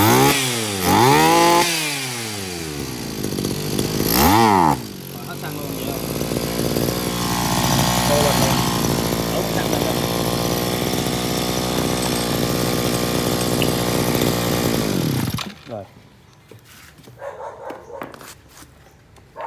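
Zenoah GE2KC two-stroke brush-cutter engine revved in short blips, its pitch rising and falling, then idling steadily before it stops near the end, leaving only faint handling clicks.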